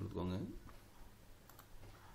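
A man's voice trails off about half a second in. Then come a couple of faint, isolated computer keyboard key clicks as a letter is typed.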